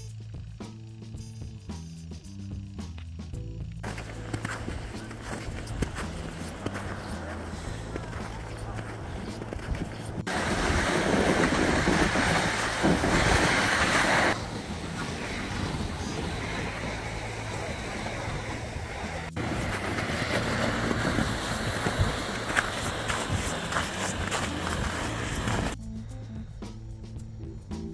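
Background music with steady low tones. About four seconds in, a rushing noise joins it. The noise changes abruptly several times and is loudest from about ten to fourteen seconds in.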